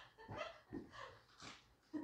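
A few faint, short bursts of laughter in a small classroom.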